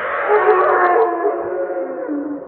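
Young macaques screaming in drawn-out, wavering cries as they wrestle in the water, with water splashing underneath.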